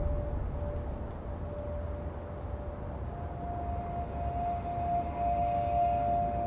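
Background score drone: a low steady rumble under a held tone, with a second, slightly higher tone coming in about halfway.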